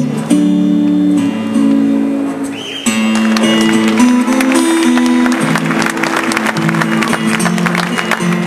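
Several acoustic guitars strumming chords together, played live. About three seconds in, after a brief dip, they change to a new chord pattern with denser, brighter strumming.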